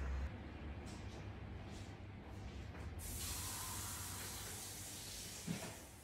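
Faint room sound, with a soft steady hiss that comes in about halfway through.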